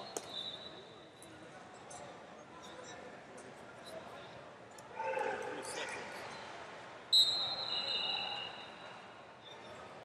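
A referee's whistle gives one long, loud, steady blast about seven seconds in, over a murmur of voices in a large gym.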